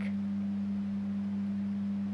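A steady low hum, one pure tone with a fainter one an octave below, over faint hiss; the hum runs unchanged under the speech on either side, so it is part of the recording's background.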